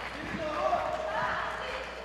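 Indistinct voices in a large hall, with a few low thuds.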